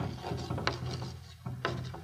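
Chalk writing on a blackboard: a few sharp taps and short scrapes of chalk as symbols are written.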